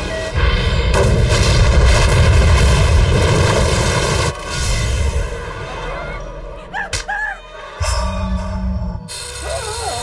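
Film trailer music with heavy low booms, loud and dense for the first four seconds and then cut off suddenly, followed by quieter music and sound effects with another burst near the end.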